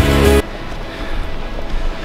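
Background rock music with guitar that cuts off suddenly about half a second in, leaving a quieter, steady, noisy outdoor ambience.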